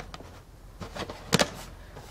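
Hard plastic clicks and knocks from a Groasis Waterboxx cover being closed and handled, with one sharp click about one and a half seconds in.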